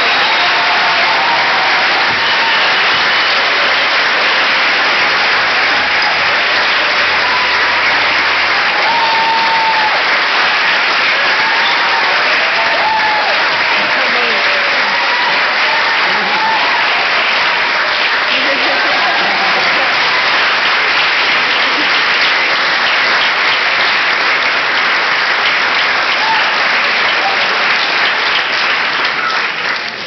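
Audience applauding steadily, with scattered shouts and cheers over the clapping, dying away right at the end.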